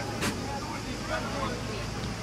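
Distant shouts and calls of young football players across an open pitch, over a steady low outdoor rumble, with one sharp knock about a quarter of a second in.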